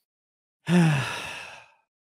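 A man sighing: one breathy exhale with his voice in it, falling in pitch and fading away, about a second long and starting a little after half a second in.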